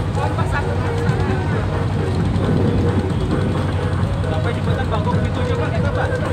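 Klotok river boat's engine running steadily with a constant low hum, under indistinct voices and chatter.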